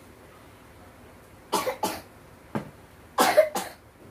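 A person coughing in short, sharp bursts: a quick double cough about a second and a half in, a single cough a second later, then the loudest run of two or three coughs near the end.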